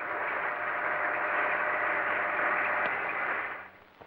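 Steady static hiss with no tune or voice in it, fading out shortly before the end.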